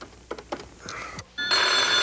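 A few light clicks of a telephone being dialled, then a desk telephone ringing loudly from about one and a half seconds in, a steady, bright, bell-like ring.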